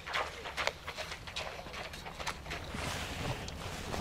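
A horse's hooves moving through shallow water and over ground: a run of irregular hoofbeats and splashes, a few each second.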